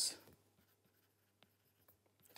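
Faint taps of a stylus on a tablet screen as a word is handwritten: two small ticks in the second half, otherwise near silence.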